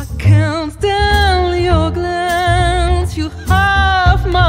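Live jazz trio: a woman's voice sings long held notes with vibrato over double bass and piano.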